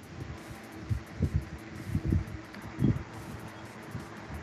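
Faint low, muffled bumps and rustling on an open call microphone, three of them about a second apart, over a faint steady hum.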